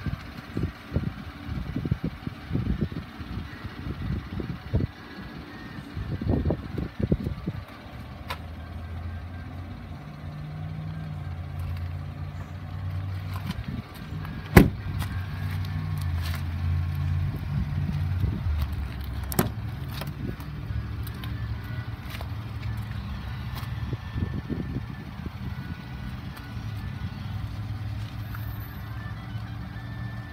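A motor vehicle engine running with a low, steady hum that sets in about eight seconds in. Before it come irregular low thumps of handling or wind on the microphone, and one sharp click is heard about halfway through.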